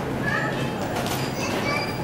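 Supermarket ambience: indistinct voices of other shoppers over a steady background hum, with a few short high chirping sounds.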